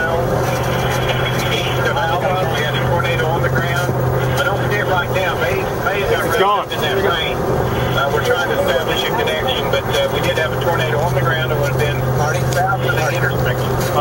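Indistinct voices talking over the steady low hum of a vehicle's cabin on the highway. The sound drops out briefly about halfway through.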